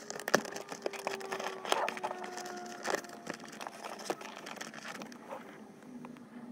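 Dash cam power cable being tucked into the gap between the headliner and the windshield: a run of small clicks and rubbing, with a couple of thin squeaky tones in the first half.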